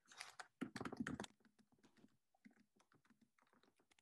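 Typing on a computer keyboard: a quick run of key clicks in the first second or so, then a few scattered faint clicks.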